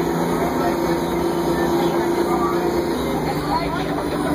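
Crown Supercoach Series 2 bus's diesel engine running steadily under way, heard from inside the passenger cabin; its note shifts about three seconds in.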